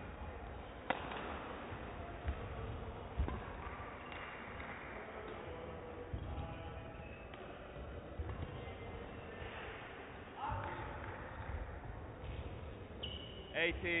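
Badminton rally in a sports hall: sharp racket strikes on the shuttlecock, several in the first few seconds, with players' footwork on the court floor under the hall's echo.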